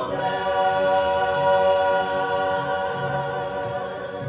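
Choir singing in harmony, settling onto one long final chord just after the start and holding it as it slowly fades.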